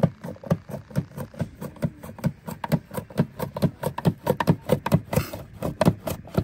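Potato slices being cut on a handheld plastic mandoline slicer, the potato pushed rapidly back and forth over the blade in a steady run of sharp strokes, about four or five a second.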